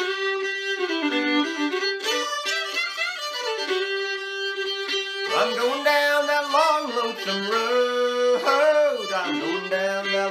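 Old-time fiddle tune bowed on a violin, with a steady drone note held under the moving melody. About halfway through, a man's singing voice joins the fiddle.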